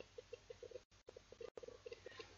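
Near silence: faint room tone with a soft, rapid pulsing of about six low blips a second.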